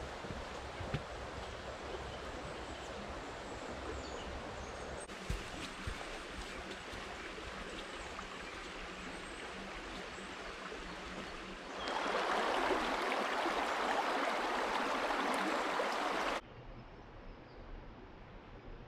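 A steady rushing noise outdoors, much like running water, which grows louder for about four seconds in the second half and then drops off suddenly.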